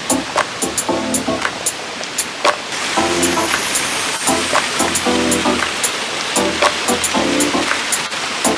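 Background music with a steady drum beat and pitched instrumental notes, becoming fuller and louder about three seconds in.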